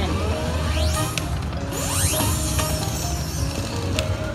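Video slot machine sound effects during a free-game spin: clicks as the reels land and two rising electronic sweeps, over the game's steady music.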